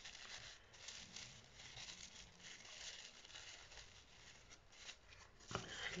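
Faint, irregular rustling and crinkling of tissue paper as the layered petals of a paper carnation are pulled apart and fluffed open by hand.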